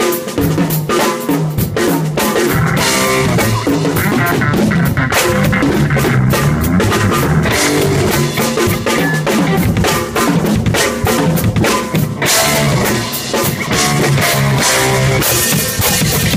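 Acoustic drum kit played without a break in an improvised jam, with rapid strokes on the toms and snare and cymbal hits.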